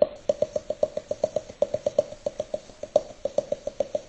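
A greyhound chattering its teeth: a rapid rattle of clicks, about seven or eight a second. In greyhounds this chattering is a sign that the dog is relaxed, excited and feels safe, not that it is cold or stressed.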